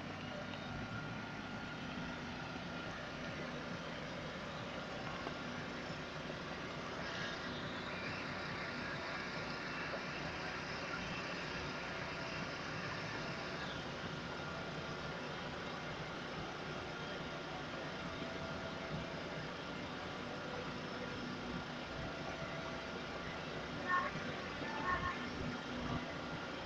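Vehicle engines idling steadily, a continuous hum, with a few brief voices near the end.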